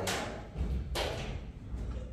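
Two short hissing sprays from a hand spray bottle of wax and grease remover, about a second apart, over low thuds.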